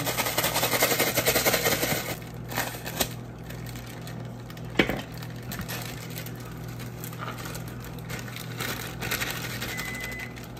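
Kitchen prep handling noise on a countertop: a rapid, scratchy rattle for about two seconds, then a few light clicks and one sharper knock near the middle, over a low steady hum.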